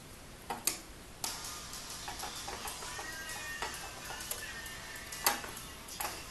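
A few sharp metallic clicks and clinks as camshafts are handled and seated on an aluminium cylinder head, the loudest near the end, over faint steady background music.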